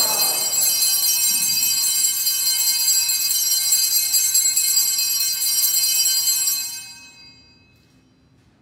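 Sanctus bells rung continuously at the elevation of the chalice, a steady cluster of high bell tones that stops near the end and dies away.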